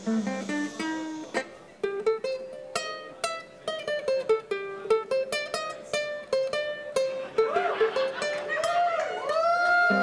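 Ukulele played note by note, running up and down a pentatonic scale with the added blues note. Several notes slide in pitch near the end.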